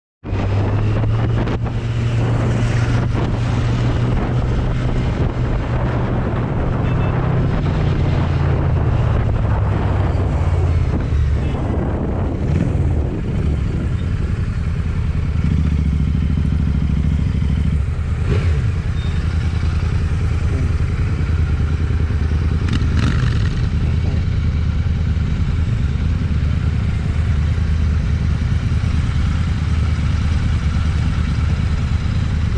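Kawasaki Z900's inline-four engine running while riding, with wind rushing over the microphone. The engine note changes pitch a couple of times, and the wind noise eases in the second half as the bike slows.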